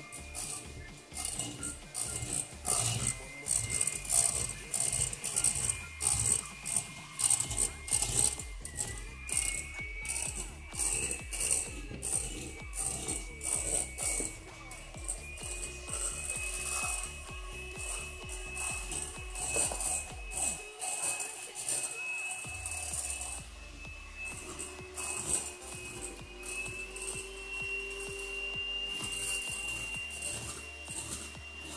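Handheld electric mixer running in a glass bowl of pancake batter: a steady motor whine that creeps slowly up in pitch. Background music with a regular beat plays over it.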